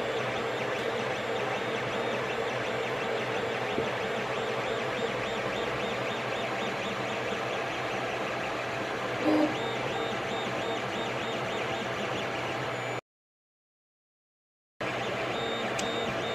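Creality CR-10S 3D printer running a print: a steady whir of its fans and motors, with faint shifting tones as the print head moves. The sound drops out completely for about two seconds near the end, then comes back.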